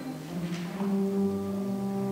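Youth symphony orchestra holding a low, steady chord, with brass prominent.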